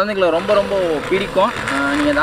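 A man talking: continuous speech, with no other sound standing out.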